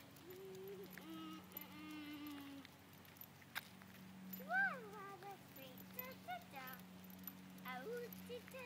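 A soft voice humming and making short sing-song sounds, with a louder rising-and-falling call about halfway through. A steady low hum runs underneath.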